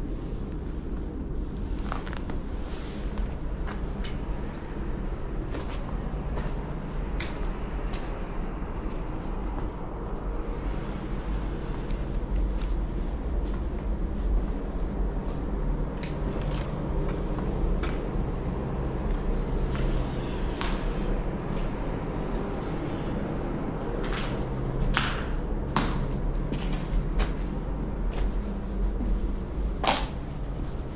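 Footsteps crunching and scuffing over broken brick and rubble on a concrete floor, with a steady low wind rumble. A run of sharper crunches comes near the end.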